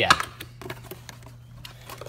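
A cardboard box being opened by hand: a few light clicks, taps and rustles as the lid and flaps are lifted and the paper inside is handled, thickest in the first second.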